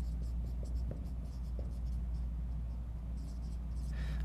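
Dry-erase marker squeaking and scratching across a whiteboard as a word is written, in a series of short strokes.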